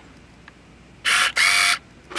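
Cholestech LDX analyzer's motorized cassette drawer opening: two short bursts of small-motor whirring, one straight after the other, about a second in.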